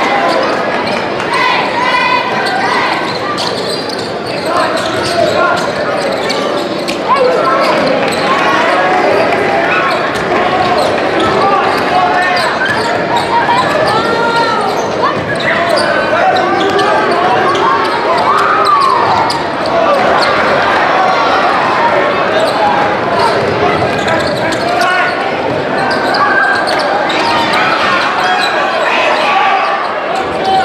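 Basketball dribbled on a hardwood gym floor during live play, under a steady din of crowd voices and shouts echoing in the gym.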